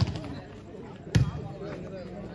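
A volleyball struck hard by a hand twice, two sharp slaps a little over a second apart, over faint crowd chatter.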